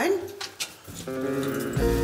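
A few light clicks, like a key turning in a lift's key switch, then background music that comes in about a second in and carries on steadily.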